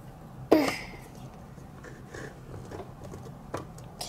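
A short throat-clear or cough-like vocal sound about half a second in, then quiet handling of a plastic toy snow-globe dome being pressed onto its base, with one sharp plastic click near the end.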